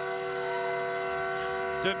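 Arena goal horn sounding one long steady chord of several tones, signalling a goal just scored. A commentator's voice comes in over it near the end.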